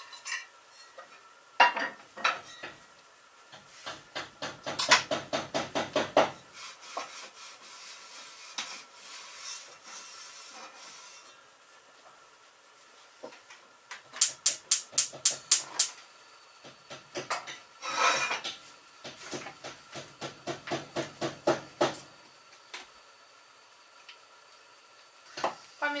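Metal utensils worked against a cooking pot on the stove: several bursts of quick, rhythmic scraping and clinking strokes, with a run of sharp, rapid ticks about halfway through.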